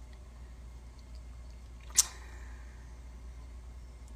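Quiet room tone with a low steady hum, broken by a single sharp click about two seconds in.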